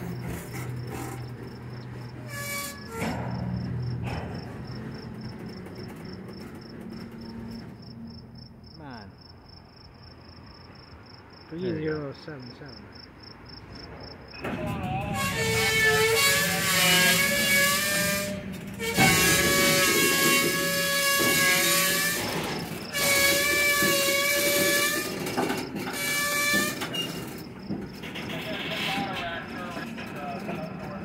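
Freight train rolling past with a thin, steady high-pitched squeal of wheel flanges on the rail. About fifteen seconds in, a locomotive horn with several chimes sounds four loud blasts.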